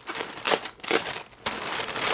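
Packaging crinkling and rustling in several irregular bursts as a newly delivered hoodie is handled and unwrapped.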